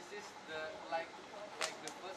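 Light talk and laughter from a small group, then two sharp claps in quick succession a little past halfway.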